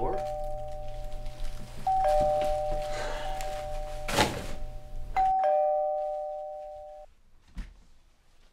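Two-note ding-dong doorbell chime, a higher note and then a lower one, rung repeatedly: already sounding at the start, struck again about two seconds in and again about five seconds in, then fading away. A single thump about four seconds in.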